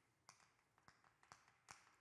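Chalk on a chalkboard, faint: a handful of short, separate taps and strokes as words are written.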